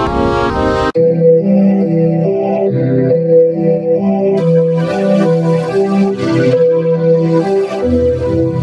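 Electronic remix music: a fast, evenly repeated chord pattern cuts off abruptly about a second in, and a melody of held notes over a lower bass line takes over, with extra high, hissy sounds joining about halfway through.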